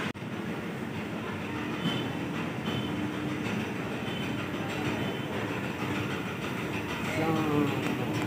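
Steady mechanical rumble with a few faint held tones in a railway station, with faint voices about seven seconds in.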